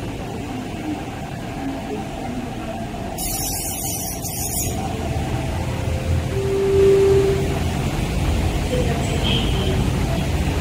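MTR East Rail Line R-train electric multiple unit running at a station platform, its low rumble growing in the second half. One short steady tone about seven seconds in is the loudest sound.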